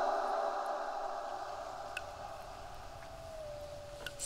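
An eerie sustained electronic drone effect slowly fading away, with a thin tone gliding slightly lower near the end.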